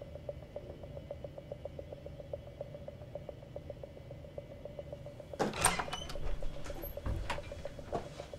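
A steady, rapid ticking, about five ticks a second, over a low hum. About five and a half seconds in, the ticking gives way to a cluster of sharp clicks and knocks.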